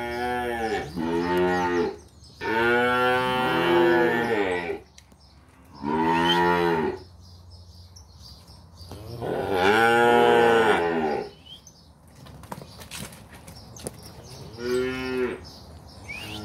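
Calves mooing repeatedly: about six drawn-out calls, each rising and then falling in pitch, with pauses between them. The longest calls come a few seconds in and again near the middle.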